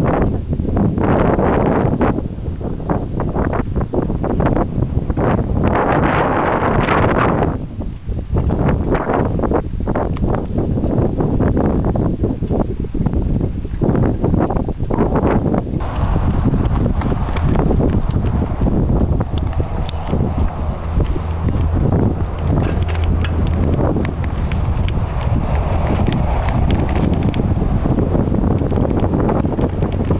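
Wind buffeting a camcorder microphone outdoors, with irregular knocks and rustles from the moving camera. A low steady hum joins in the second half.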